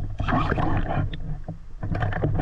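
Water sloshing around an underwater camera at the surface, loudest in the first second, over a low steady hum.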